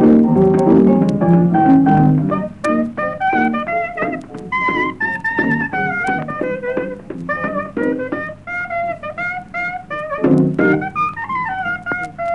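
Traditional Chicago South Side jazz record playing: the full band sounds together at first, then about two and a half seconds in a single lead instrument takes a quick melody line of short notes over the rhythm section.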